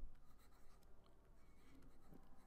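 Faint strokes of a stylus handwriting on a tablet, very quiet and otherwise near silence.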